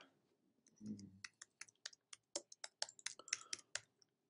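Faint clicking of computer keyboard keys as a search term is typed: a quick run of keystrokes, about five a second, starting about a second in.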